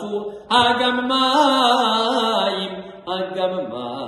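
A man chanting Hebrew liturgy from the Haggadah in cantorial style. A long phrase starts about half a second in and is held with a wavering pitch until about three seconds, then a new phrase begins.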